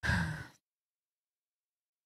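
A person's short sigh, about half a second long.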